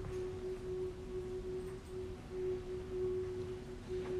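Soft background score: a single sustained note held steady under the scene.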